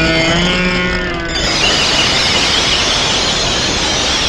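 Film soundtrack: dramatic music with held tones and a falling glide, giving way about a second and a half in to a steady, unpitched rushing noise.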